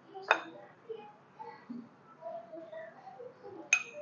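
A metal spoon clinking and scraping on a glass mixing bowl and a small ceramic ramekin as thick chocolate batter is spooned across. It is faint, with a sharper clink about a third of a second in and another just before the end.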